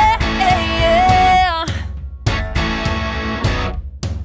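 Rock song's instrumental break: a lead guitar holds a bending note with vibrato, which ends a little under halfway through. Then the band plays short stop-start hits with brief gaps between them.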